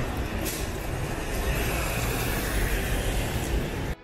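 Steady low rumble and hiss of vehicle traffic on wet roads.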